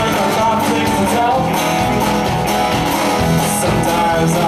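A live blues-rock band playing at full volume: electric guitar, acoustic guitar, bass guitar and drums, with a steady beat of drum and cymbal strokes.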